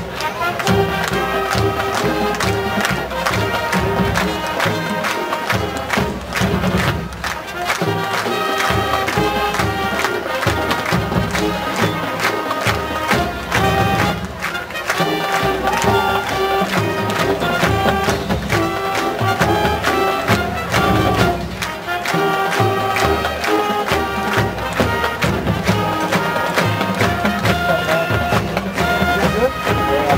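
A college marching band playing its pep song, brass holding the melody over a steady drum beat.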